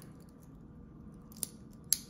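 Two short metallic clicks of a stainless steel watch bracelet being handled, about half a second apart in the second half, the second one louder.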